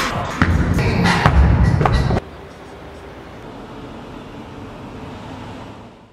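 Hip-hop/R&B background music with a heavy beat that cuts off abruptly about two seconds in, leaving a quieter, even wash of sound that fades out near the end.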